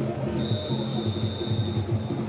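Referee's whistle blown in one long blast of about a second and a half, signalling half-time, over music and chanting from the supporters in the stands.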